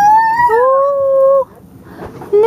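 A young child's long, high-pitched wordless call that rises in pitch and is then held, breaking off about one and a half seconds in.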